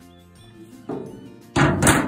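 Soft background music, with a light knock about a second in and a louder thud about one and a half seconds in that fades out slowly.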